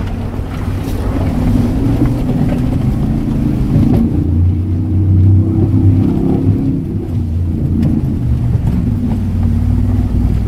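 A 4x4's engine working hard, heard from inside the cabin as it drives through shallow river water. The engine note gets louder and climbs a little from about four seconds in, then eases off again near seven seconds.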